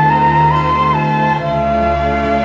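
Background music of slow, held notes: a sustained melody note steps up about half a second in and drops back down about a second in, over sustained lower notes.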